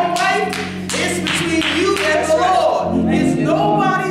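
Gospel worship singing with sustained organ chords underneath and hand clapping, the claps heaviest in the first couple of seconds.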